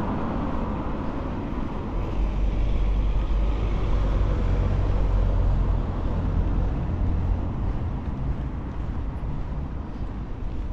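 Street traffic: a motor vehicle passing close by with a low rumble that swells about two seconds in and fades after about seven seconds, over the general hum of city traffic.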